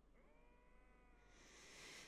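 Near silence, with a faint drawn-out pitched tone, like a held voice, starting just after the opening and a brief soft hiss near the end.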